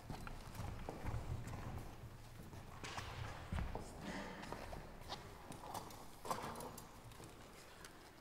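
Faint, irregular knocks, clicks and shuffling of people moving on a hard floor in a quiet hall, with no music playing.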